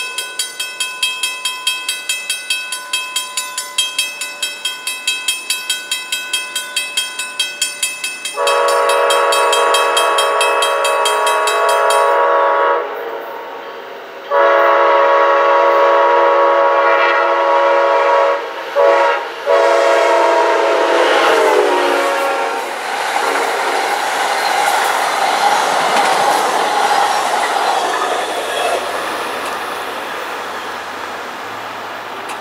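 A rapid, steady crossing-bell ringing, then about eight seconds in an Amtrak GE P42DC locomotive's horn blows the grade-crossing pattern: long, long, short, long. The last blast drops in pitch as the locomotive passes. The passenger train then rushes by with wheel and rail noise that slowly fades.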